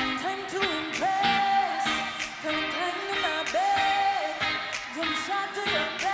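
Female pop vocal group performing live over a backing track with a steady drum beat; a high held melodic phrase recurs every second or so.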